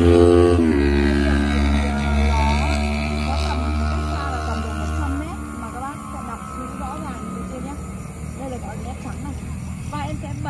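A motor vehicle going past on the road: its engine hum is loudest at the start, drops in pitch as it passes and fades away about five seconds in.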